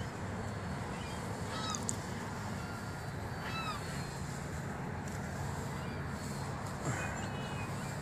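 A few short bird calls, each a quick curved note, spaced a second or two apart over a steady outdoor hiss, with one falling call near the end.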